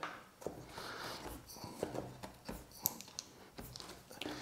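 Faint small clicks and taps, about half a dozen, with light rustling: plastic control knobs being pulled off an amplifier's potentiometer shafts by hand and set down on a table.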